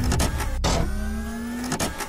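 Small electric motor whirring in two runs, each rising slightly in pitch, with a click before and after the second run: a sound effect of a motorized mechanism driving and stopping.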